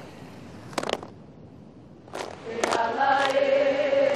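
A group of women's voices chanting in unison, coming in about two and a half seconds in on held notes. A few sharp percussive strikes fall before and between the phrases, the first about a second in.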